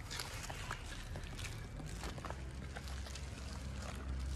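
A cat crunching dry kibble: irregular crisp cracks and clicks as it chews, over a steady low rumble of wind on the microphone.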